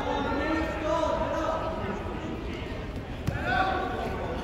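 Onlookers' voices calling out across a gym during a wrestling bout, with a single sharp thump about three seconds in.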